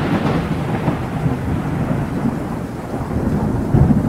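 A loud, deep thunder-like rumble, swelling again near the end.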